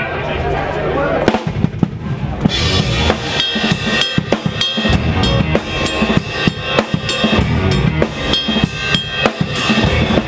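Live rock band starting a song: drum kit hits begin about a second in, and the full band, drums loudest, is playing from about two and a half seconds in with a steady beat.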